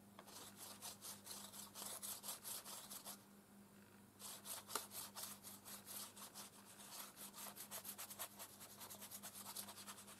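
Flat paintbrush stroking wet paint back and forth across a paper page in quick, even strokes, blending the colours, with a pause of about a second near the middle.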